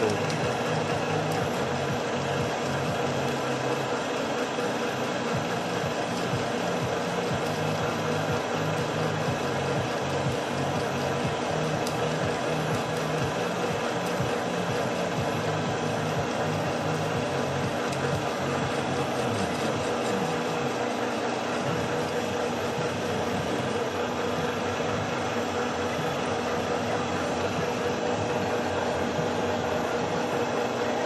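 A machine fitted with a newly made shaft running steadily on test, giving a constant hum with a steady whine that holds the same pitch throughout.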